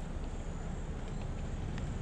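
Steady outdoor background noise with a low rumble and no distinct sounds.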